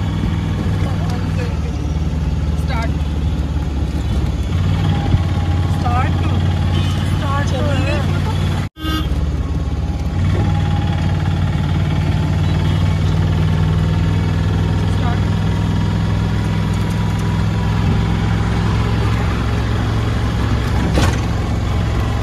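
Engine and road noise heard from inside an open-sided auto-rickshaw as it drives: a steady, loud low rumble. Passing voices come through partway in, and the sound cuts out for an instant a little before halfway.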